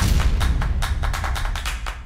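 Electronic music with a heavy bass and a fast percussive beat, cutting in suddenly: the logo sting of the TV show.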